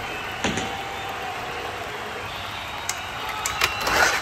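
Sharp knocks and clicks from toy monster trucks landing after a ramp launch: one about half a second in and several near the end, the last the loudest. Under them runs a steady whining drone.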